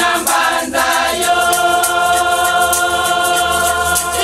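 Women's church choir singing, holding one long chord from about a second in, over a steady beat of hand shakers.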